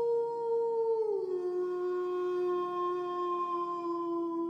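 A long howl-like tone, as used for a transition sound effect. It glides down in pitch about a second in, then holds steady over a fainter low drone.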